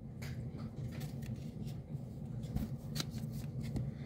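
Glossy trading cards sliding against one another as a stack is flipped through by hand: quiet rustling with a few light ticks.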